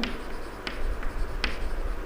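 Chalk writing on a chalkboard: faint scratching strokes with a few sharp taps as the chalk strikes the board.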